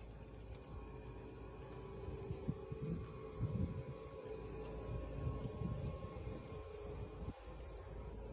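Faint low rumble of background noise with a faint steady hum and soft, uneven swells.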